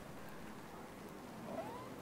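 Quiet room tone in a lecture room during a pause in the talk, a faint steady hiss, with one faint short rising squeak about one and a half seconds in.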